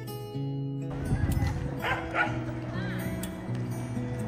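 Background music with steady low tones. From about a second in, open-air crowd ambience joins it, and a dog barks twice in quick succession about two seconds in.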